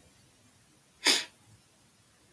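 A single short, sharp burst of breath from a person, about a second in, with a sudden start and a quick fade.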